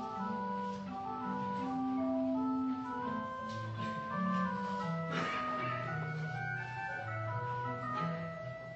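Church organ playing offertory music while the offering is collected: slow sustained chords over a moving bass line. A brief noise cuts through about five seconds in.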